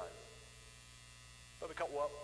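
Steady low electrical mains hum under a pause in a man's speech; his voice trails off at the start and comes back with a word near the end.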